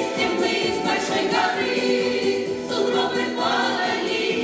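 A choir of older women and men singing a winter folk song together in full voice.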